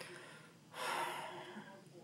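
A single noisy breath from a man close to the microphone, lasting under a second, about a second in.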